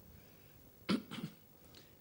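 A person coughing: one sharp cough about a second in, followed by a couple of fainter ones.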